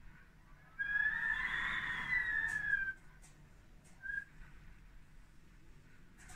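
Storm wind whistling through window shutters: a high whistle swells and fades over about two seconds, then a brief short whistle comes about four seconds in.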